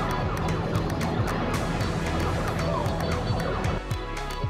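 Arcade game machines sounding all at once: overlapping electronic jingles and siren-like rising and falling sweeps over a steady low hum. Near the end it gives way to a different, quieter music.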